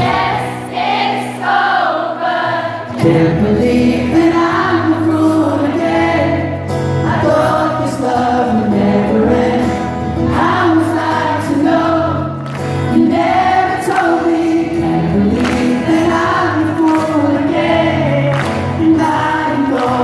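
Live band playing a pop ballad with many voices singing along together, the crowd joining in on the song.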